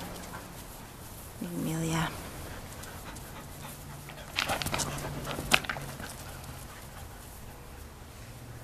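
Poodle puppies at play: a brief whine-like vocal sound about a second and a half in, then a cluster of short breathy bursts around the middle, like panting and snuffling.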